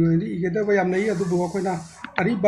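A person talking continuously, with a faint hiss behind the voice for about a second in the middle.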